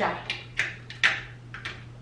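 Plastic and metal clicks and scrapes of a tripod's quick-release mount plate being seated back into the pan head of a Digipod TR462, with a few separate knocks spread over the two seconds.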